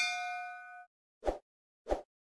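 Notification-bell sound effect: a bright ding that rings for almost a second and dies away, followed by two short pops.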